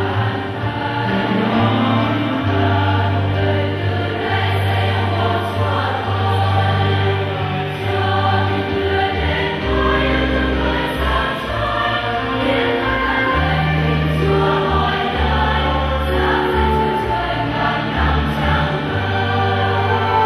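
Church choir singing a processional hymn over long, steady bass notes that change every few seconds.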